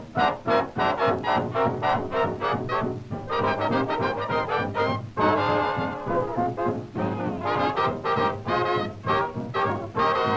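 Early jazz band record from the 1920s–30s, played from vinyl: an instrumental passage of quick melodic phrases with no singing.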